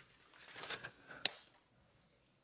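Small container of dried lemon zest being handled and shaken over a mixing bowl, a soft rustle, then one sharp click.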